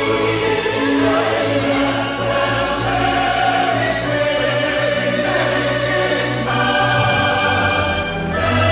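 Orchestral music with a choir singing long held notes.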